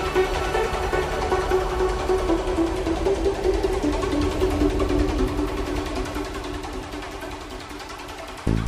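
Uplifting trance track: a synth melody stepping down in pitch over a low bass, growing gradually quieter over the last few seconds.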